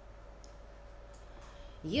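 Quiet room with a faint steady hum and a couple of faint laptop clicks as she moves to the next poem; a woman's voice starts reading near the end.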